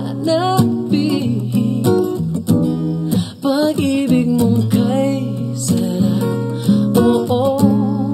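Two acoustic guitars played together, strummed and picked, with a male voice singing a slow, gentle melody over them.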